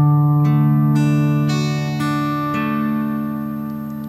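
Acoustic guitar fingerpicking a D major chord as a six-note arpeggio (thumb, index, middle, ring, middle, index) in 6/8, the notes about half a second apart, then left to ring.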